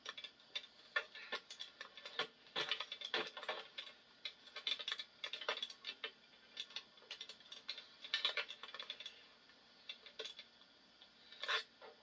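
Handling noise from a camera being picked up and repositioned: irregular clicks, taps and light rubbing at uneven intervals, with no steady rhythm.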